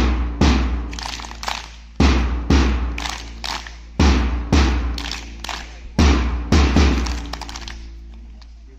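Drum beats keeping time for a mass drill: a pair of heavy, deep hits every two seconds, each ringing out with a bright crashing wash, with lighter strikes between. The last pair comes about six seconds in and rings away.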